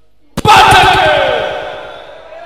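A sudden hit about a third of a second in, followed at once by a loud drawn-out fighting shout whose pitch wavers and falls away over about a second and a half.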